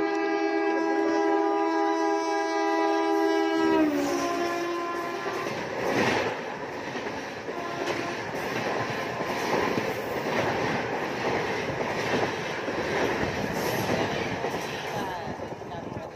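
A double-decker passenger train passing close by on the adjacent track: its horn sounds one long steady blast that drops in pitch about four seconds in and fades, followed by the continuous rumble and clatter of its coaches rolling past.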